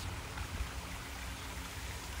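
Small garden waterfall trickling steadily into a pond.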